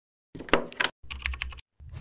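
Computer keyboard typing: two quick runs of key clicks, then near the end a deep thud with a low rumble.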